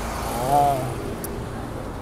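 Roadside traffic noise with a steady low engine hum, and a short snatch of a man's voice about half a second in.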